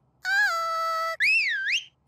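A high held note, then a cartoon whistle that slides up, swoops down and climbs again.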